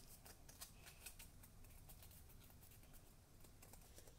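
Near silence, with faint scattered ticks and light rustles of paper as hands press a folded cardstock card holder shut while its glue sets.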